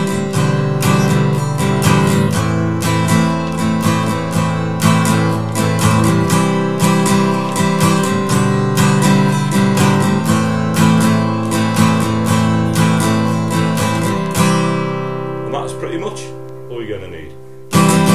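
Taylor 214ce acoustic guitar strummed in a down, down, up, up, down-up pattern through the song's chords. The strumming stops a few seconds before the end and the last chord rings out and fades.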